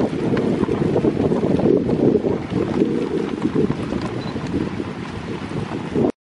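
Wind buffeting the microphone on a dog sled moving at speed along a snowy trail, a steady rough rumble over the sled running on the snow.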